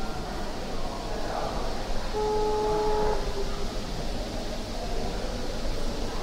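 Telephone ringback tone from a smartphone on speaker: one steady ring lasting about a second, about two seconds in, with the next ring due after a pause of about four seconds. It is the sign that the called line is ringing and has not yet been answered.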